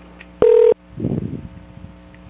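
A single short telephone beep over the phone line: one steady tone lasting about a third of a second, about half a second in.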